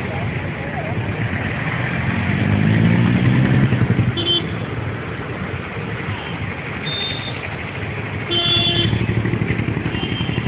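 Road traffic with motor vehicles: an engine rising in pitch about two to four seconds in, and short horn toots a few times.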